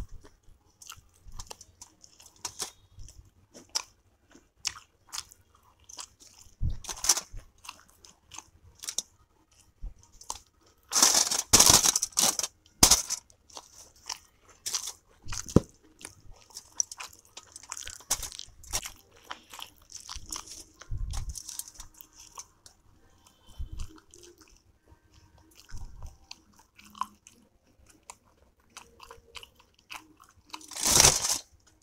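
Close-miked chewing of soft steamed momos: wet mouth smacks and small clicks, with a louder run of chewing noises about a third of the way in.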